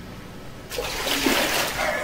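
Floodwater splashing: a sudden loud burst of splashing that starts under a second in and lasts about a second.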